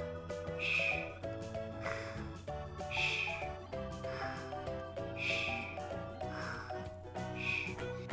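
Light background music under a repeating cartoon snoring sound effect: a hoarse snore, then a whistling breath out about a second later, about three times.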